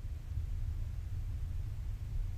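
Room tone: a low, steady hum with nothing else happening.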